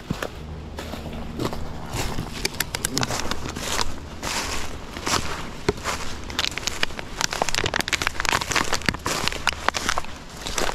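Footsteps crunching through dry leaf litter and fallen twigs, with many quick crackles and snaps as the walker moves down a wooded slope. A faint low hum runs underneath.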